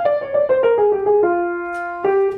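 Hallet, Davis & Co. acoustic piano: a right-hand single-note bebop line played quickly, stepping down in pitch and ending on a held note, over an F minor to B-flat 7 vamp (a ii–V in E-flat that never resolves).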